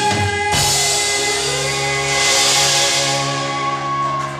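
Live rock band playing on drum kit with cymbals: a hit about half a second in, then a long held chord that rings on to the end.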